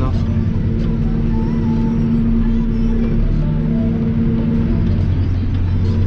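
Tractor engine running steadily, heard from inside the closed cab as a constant low drone.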